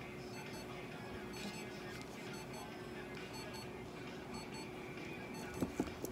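Electronic beeping: quick groups of short, high beeps repeating over and over, over a steady low hum. A couple of sharp knocks come near the end.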